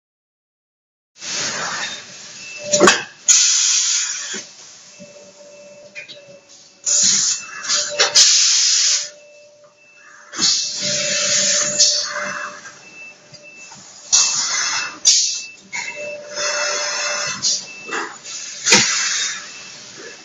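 Vertical plastic injection moulding machine and its automated part-handling unit cycling. Loud bursts of hissing air come every few seconds, typical of pneumatic valves exhausting, with several sharp mechanical clicks and a faint tone between the bursts.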